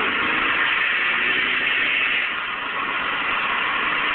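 Car engine running with its muffler gone: a loud, steady exhaust rasp.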